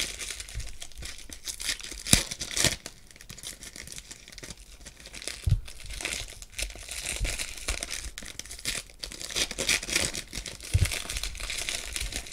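Foil wrappers of Panini Prizm basketball card packs crinkling and tearing in the hands as packs are opened, with a few soft thumps from the cards being handled.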